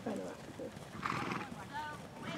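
A horse blows a short, fluttering snort through its nostrils about a second in, while a ridden grey horse trots on arena sand. Soft voices are heard nearby.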